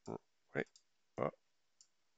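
Short spoken words, with a faint computer mouse click near the end as menu items are clicked.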